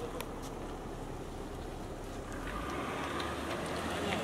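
Range Rover SUV's engine running with a low, steady rumble as the car pulls away slowly.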